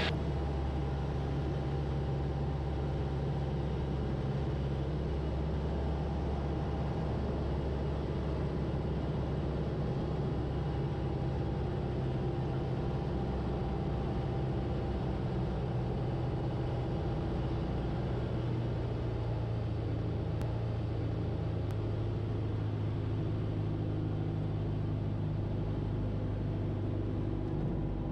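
Van's RV-8 single-engine piston aircraft's engine and propeller droning steadily in flight during a low approach over the runway, the drone shifting slightly in pitch in the second half.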